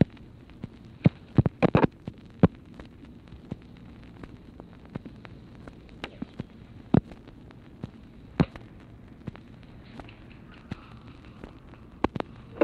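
Steady hiss of an old Dictabelt telephone recording on an open, waiting line, broken by scattered sharp clicks and pops of surface crackle, the loudest clustered about one to two and a half seconds in.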